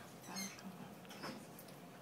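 African grey parrot making two faint, short squeaks, one about half a second in and one a little past a second.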